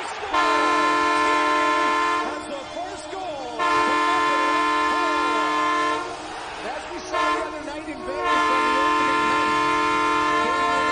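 Ottawa Senators' arena goal horn: a deep, chord-like air horn sounding three long blasts of about two seconds each, with a short toot just before the third.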